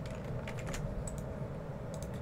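Light typing on a computer keyboard: a few scattered key clicks over a steady low room hum.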